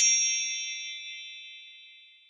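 Intro chime sound effect: a bright, high ding of several tones ringing together, fading out over about two seconds.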